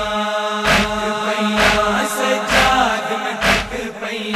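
A male voice chanting a noha, a Shia lament sung in long held notes over a steady low drone. Rhythmic chest-beating (matam) strikes land just under a second apart, four times.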